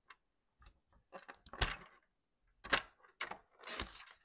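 Clicks and taps of paper being lined up on a plastic paper trimmer, with a short paper rustle between them; the sharpest clicks come near three seconds in and again just before the end.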